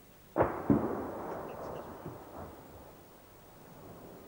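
Distant weapon fire: two sharp reports about a third of a second apart, less than a second in, followed by a long rolling echo off the mountains that dies away over about two seconds.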